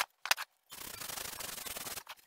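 Sandpaper rubbed by hand over oak slats: a steady, even scratching that starts under a second in, after a couple of sharp clicks.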